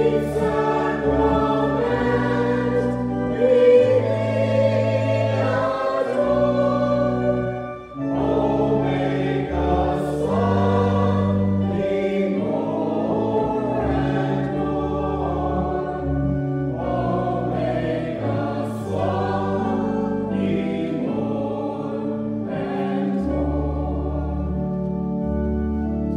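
Voices singing a hymn in chorus over organ accompaniment, with steady low bass notes changing every second or two.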